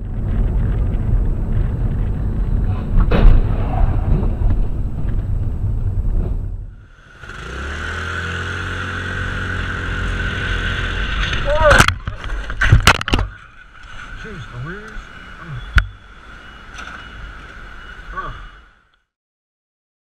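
Road and engine noise from dash-cam and helmet-cam traffic clips, first a low rumble, then a motorcycle running with a steady whine. A quick series of sharp bangs or impacts comes about two-thirds of the way in and a single sharp crack a little later, with a brief voice. The sound cuts off abruptly shortly before the end.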